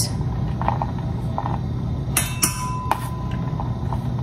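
Metal measuring spoon tapping and scraping against the rim of a cocoa can to level off a spoonful of cocoa powder: a few sharp taps about two to three seconds in, over a steady low hum.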